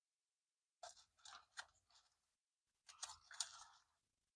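Faint crunching from chewing a crispy fried pollock fish sandwich, in two short spells about a second and a half each, the first starting about a second in.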